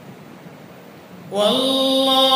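Quiet hiss, then about one and a half seconds in a solo voice comes in loudly, chanting a long, held melodic note.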